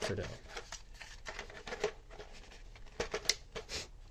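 Plastic handling noises from a toy foam-dart blaster and its parts: irregular clicks, knocks and rustles, with a few sharp clicks about three seconds in.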